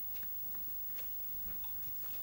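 Sparse, irregular light clicks and ticks from sheets of paper being handled and lifted close to a microphone, over a steady hiss.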